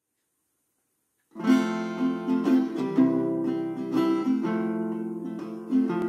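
Acoustic guitar picking and strumming the slow intro to a classic country waltz. It starts about a second in.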